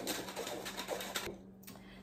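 Metal flour sifter sifting flour, its works scraping against the mesh in a quick rattling rhythm that stops about a second in.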